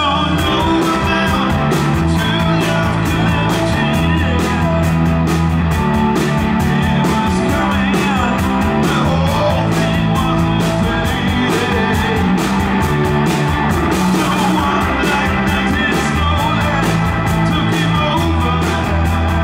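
Live blues-rock band playing at full volume: electric guitars, electric bass and a drum kit with driving cymbals. The drums and cymbals crash in right at the start.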